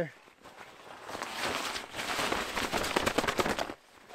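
Poncho fabric rustling and crinkling as it is bunched and handled, a dense crackle that builds about a second in and stops just before the end.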